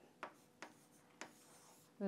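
Faint stylus taps and strokes on a tablet screen as a number is written and circled on a digital whiteboard: three soft ticks in the first second or so, then a light scratching near the end.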